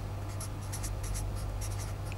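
Marker pen writing on paper: a quick run of short scratchy strokes, over a steady low electrical hum.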